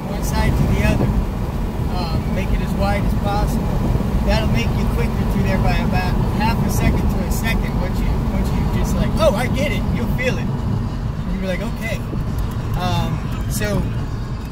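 Car engine and road noise heard from inside the cabin while the car drives at track speed, a steady low rumble throughout.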